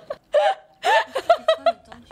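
A woman laughing hard in a quick run of short, high-pitched bursts.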